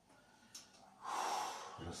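One audible breath out, about a second long, starting about a second in, after a faint click.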